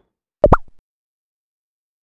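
Cartoon-style pop sound effect added in editing: a quick double pop with a short upward blip in pitch, about half a second in.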